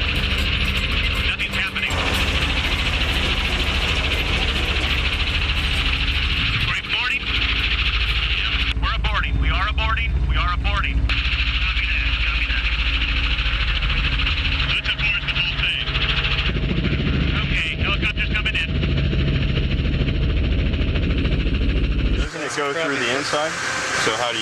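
Steady low engine drone from the rolling 1967 Chevy and the chase helicopter, under a steady hiss, with a few brief faint voices around the middle; the drone cuts off near the end.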